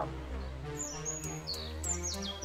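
Background music with steady low sustained notes. High chirps falling in pitch come in twice, about a second in and again near the end.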